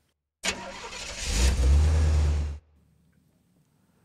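Sound effect of a car pulling away: a low engine rumble with road noise that builds over about a second, holds, and cuts off abruptly after about two seconds.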